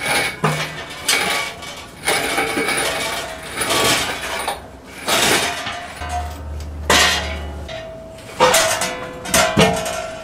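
Metal clanking and rattling from an engine hoist's hook, chain and steel frame as a hanging engine is lifted and shifted: irregular knocks about once a second, some leaving a short ringing tone.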